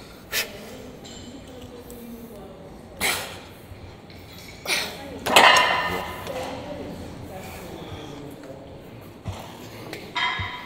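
Metal gym weights clanking several times. The loudest clank, about five seconds in, rings briefly. Faint voices are behind.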